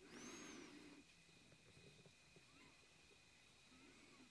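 Near silence: room tone, with a faint brief sound in the first second.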